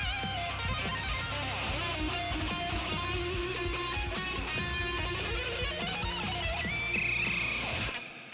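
Electric guitar playing a melodic lead with bends over a backing track of bass and drums. It ends on a held high note with vibrato, then the music cuts off at the very end and rings away.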